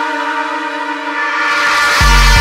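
Drum and bass track in a breakdown: the drums and sub bass drop out, leaving a sustained dark synth chord. Noise swells in the high end in the last half second as the build-up before the beat returns.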